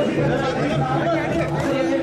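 Many men talking at once in a pressing crowd, a steady babble of overlapping voices.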